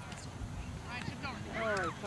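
Distant voices of players shouting and calling across the field, with one loud, high, falling shout near the end, over a low steady outdoor rumble.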